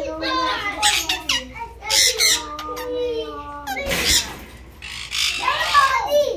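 Parrots squawking several times in shrill bursts, with speech-like chattering babble between the calls.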